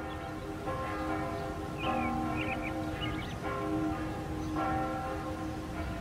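Church bells ringing, several tones sounding together and hanging on, with new strokes every second or so and a few short high chirps over them.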